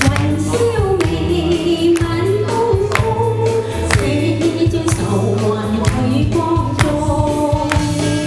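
A woman singing a pop song into a microphone over amplified musical accompaniment with a steady drum beat and bass.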